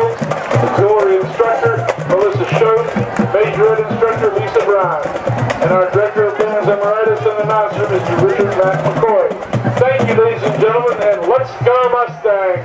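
An announcer's voice over a stadium PA, reading on through the band's staff credits, with music playing under it.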